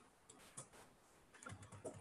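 Faint typing on a laptop keyboard: a few scattered, light key clicks, most of them in the second half.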